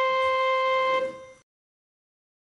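Electronic keyboard holding a single note, the C above middle C, which is released about a second in and dies away quickly, ending the melody on the tonic of the yona-nuki scale.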